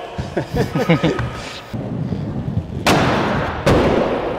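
Aggressive inline skates rolling on a plywood skatepark surface, then two loud impacts about three quarters of a second apart near the end, echoing in a large hall.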